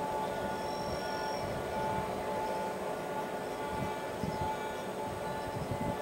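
A container freight train standing still before departure: a steady hum with several held tones and no coupler clank yet.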